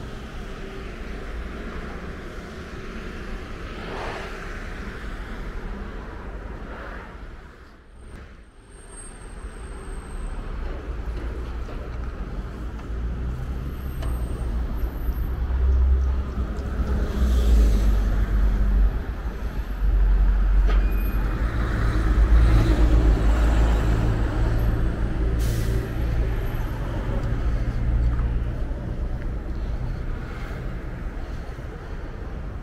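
Street traffic noise: motor vehicles running nearby, with a low engine rumble that grows louder in the second half after a brief lull about eight seconds in.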